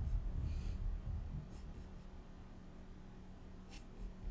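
A few faint, sparse clicks from a computer mouse being used to scroll and point, about half a second in, at about one and a half seconds and near the end, over a low steady hum.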